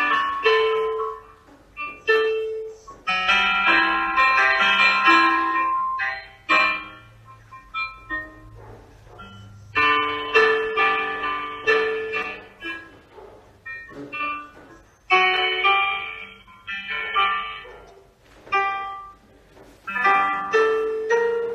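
Piano music accompanying a ballet barre exercise of grand pliés: struck chords and melody notes that ring and fade, played in phrases of a few seconds with short breaks between them.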